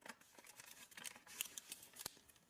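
Faint rustling and light crackle of origami paper being folded and creased by hand, in a few soft scattered ticks, the clearest about two-thirds of the way through.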